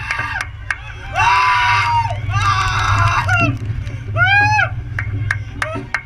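A thrill-ride rider screaming and laughing: a long held yell about a second in, a shorter rising-and-falling one just after four seconds, over a steady low rumble.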